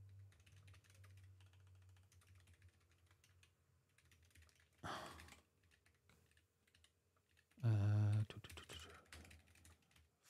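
Typing on a computer keyboard: a quick, irregular run of key clicks that thins out now and then.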